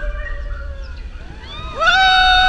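Seven Dwarfs Mine Train roller coaster running with a steady low rumble while riders give long, held whooping cries; a louder cry rises and holds near the end as the train speeds down the drop.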